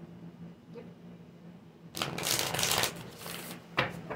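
A deck of oracle cards being shuffled by hand: a dense papery shuffle starts about two seconds in and lasts about a second and a half, followed by a single sharp click near the end.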